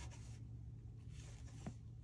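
Faint rubbing of yarn against wooden circular knitting needles as knit stitches are worked, with one light tick near the end.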